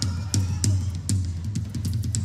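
A live band playing an instrumental stretch, led by the drum kit: a steady beat of kick drum, snare and cymbal strokes over a continuous bass line.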